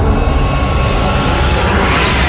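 Intro sound effect: a loud, deep rumbling whoosh that swells toward the end.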